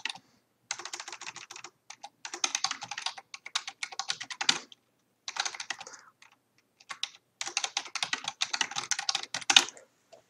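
Fast typing on a computer keyboard, in bursts of rapid key clicks broken by short pauses.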